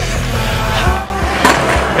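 Background music with a steady beat, with a single sharp knock about one and a half seconds in.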